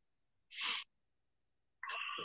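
A man breathing between sentences: a short breath about half a second in, then a brief breathy vocal sound near the end.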